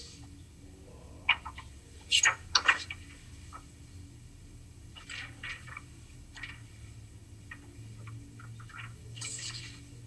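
Quiet room tone with a low steady hum and a scattering of faint short clicks and small handling noises, the loudest a few seconds in, and a soft rustle near the end.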